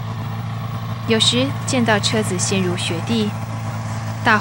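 Snowmobile engine idling with a steady low hum, with talking over it from about a second in.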